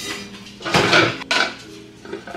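Metal cookware pots clattering and knocking together as they are handled and lifted out of a cabinet shelf. The loudest clatter comes around the middle and ends in one sharp knock.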